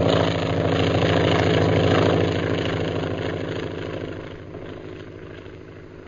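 Sound effect of a propeller airplane flying overhead in an old radio-drama recording: a steady engine drone, loudest during the first two seconds, that then fades away as the plane flies off.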